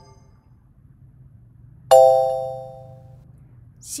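A single electronic chime sound effect: a bright, pitched ding that starts suddenly about halfway through and rings away over about a second and a half.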